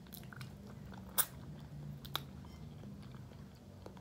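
A person biting and chewing a mouthful of food, quietly, with two sharp crunchy clicks, about a second in and again about two seconds in.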